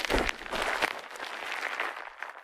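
Bubble wrap being scrunched and squeezed in the hands right at the microphones: a dense, continuous crackle of many small clicks.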